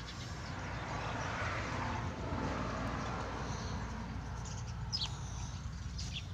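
Coloured pencil rubbing on notebook paper as a drawing is shaded in: a soft, steady scratchy hiss over the first few seconds that then fades.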